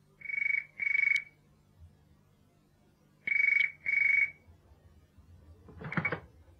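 Telephone ringing with the British double ring: two rings about three seconds apart, each a pair of short bursts at one steady pitch. A short noise comes just before the end.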